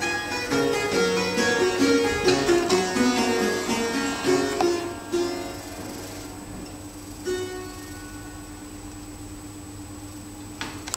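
Fretted clavichord played: a quick run of notes that stops about five seconds in, one low note still ringing, then a last brief chord about seven seconds in that dies away.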